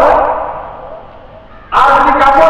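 A man's voice amplified through microphones: a long drawn-out, chanted syllable that fades away over the first second, then speech picks up again loudly near the end.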